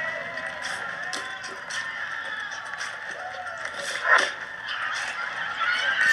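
Film soundtrack playing through the host's phone audio: music with a crowd cheering and clapping and a scatter of short sharp knocks, and one louder burst about four seconds in.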